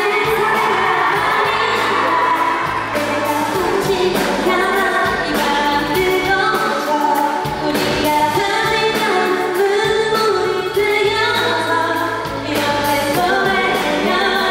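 Live band playing a pop song, with a woman singing into a handheld microphone over bass and drums.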